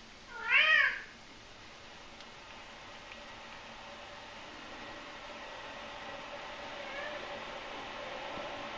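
A male house cat's single meow about half a second in, rising then falling in pitch, a call that sounds like a crow. He is asking for breakfast.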